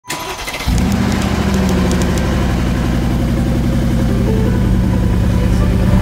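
A car engine cranks briefly and catches within the first second, then idles steadily.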